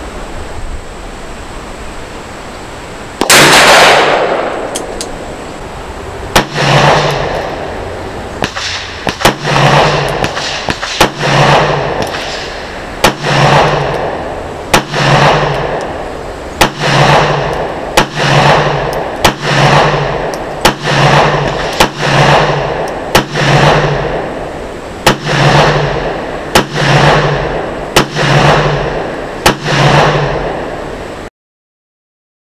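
Handgun shots at an engine-block target: one shot a few seconds in, then a long string of shots fired at a steady pace of about one a second, each a sharp crack with a short ring-off.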